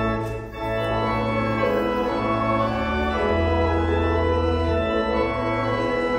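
Organ playing a hymn in sustained chords that change every second or two, with a short break about half a second in.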